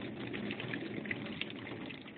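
Water splashing and sloshing in a bucket of freshly caught catfish as a hand moves the fish around: a steady run of small splashes.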